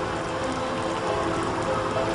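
Steady rain falling, under soft background music of slow held notes.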